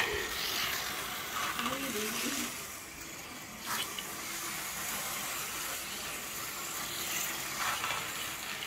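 Vintage 1970s slot cars running around a plastic track, with a toy electric train running on its own track: a steady hissing whir of small electric motors and pickups on the rails, with a faint steady hum about halfway through.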